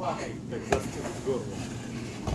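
Snow shovel scraping and scooping snow, with one sharp knock a little before halfway in, over a low rumble of wind on the microphone.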